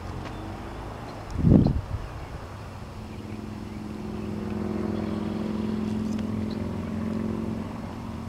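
An engine running steadily, its hum swelling from about three seconds in and easing off near the end. A brief loud low rumble comes about a second and a half in.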